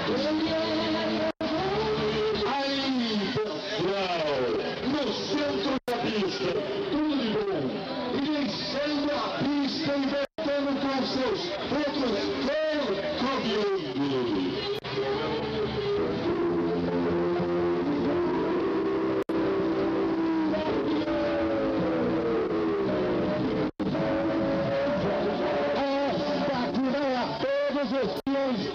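Heavy vehicle engines, probably trucks, running and revving, several at once, their pitch rising and falling in arches, holding steady for a few seconds midway, then dropping slowly. The sound cuts out for an instant several times.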